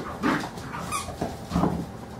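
Carolina dogs at rough play, giving two short vocal sounds, about a third of a second and a second and a half in.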